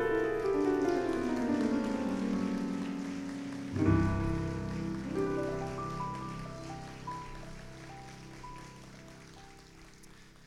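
Digital piano playing a fast descending run of notes, then a low chord struck about four seconds in, with a few higher notes above it, ringing on and slowly fading away.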